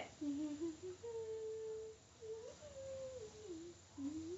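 A child humming a short tune as a clue. The melody steps up and down through a few held notes, with a brief break about two seconds in.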